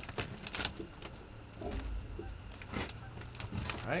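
A few sharp clicks and knocks as a catfishing rod and reel are handled and lifted out of a rod holder in a boat, over a low steady hum that comes in about a second in.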